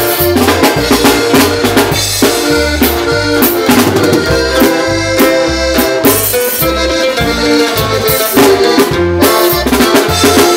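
Live band music: an accordion plays the melody over bass and drums, with a steady beat.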